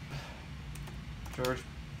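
Typing on a laptop keyboard: a quick run of keystroke clicks in the middle, then a spoken word.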